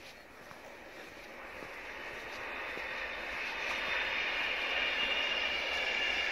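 Distant passenger train running along a rail line across open fields, its noise growing steadily louder as it comes nearer, with a faint high whine.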